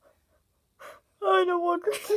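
A person's voice: a short gasp a little under a second in, then a drawn-out wordless vocal cry of slightly falling pitch.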